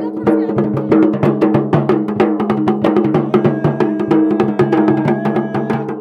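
Garhwali dhol drums played together with stick and hand in a fast, even, driving rhythm.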